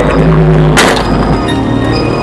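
Car stereo playing a hip-hop track loud, with deep sustained bass from two shallow-mount 12-inch Sony Xplod subwoofers on a 500-watt mono amp and an organ-like melody over it. One sharp crack sounds just under a second in.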